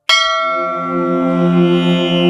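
A bell struck once just after a moment of silence, ringing on and slowly dying away over sustained instrumental tones: the opening of a devotional song.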